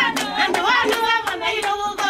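A group of women singing together while clapping their hands in a steady rhythm, about three claps a second.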